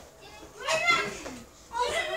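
A child's high-pitched voice in two short calls, one about half a second in and another starting near the end.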